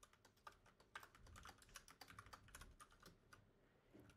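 Faint typing on a computer keyboard: a quick, irregular run of soft keystrokes as code is entered.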